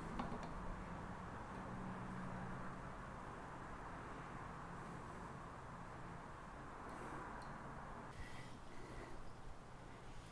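Faint handling sounds of an adjustable wrench tightening a brass propane hose fitting at a gas regulator, with a few small clicks near the start, to stop a small leak that the soapy-water test has just shown. A steady low hum runs underneath.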